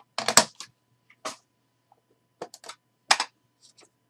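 Clear plastic card case being opened and handled: a few sharp plastic clicks and rattles, the loudest just after the start.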